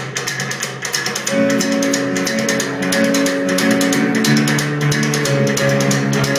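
Live rock band opening a song: rapid, evenly repeated guitar strokes, joined about a second in by sustained chords and bass notes that make it louder.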